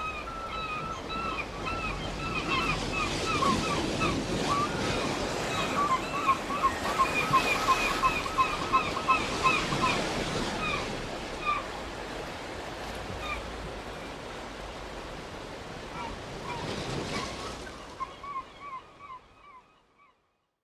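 Sea surf washing onto a beach, with birds calling over it in many quick, short repeated cries. The surf fades out near the end.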